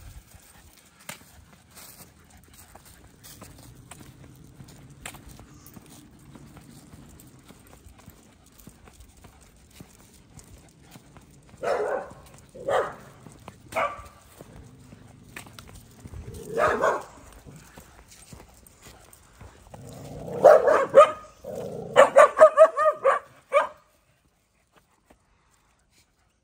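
A dog barking: a few short barks, then a louder, rapid run of barks near the end. A man laughs briefly in the middle.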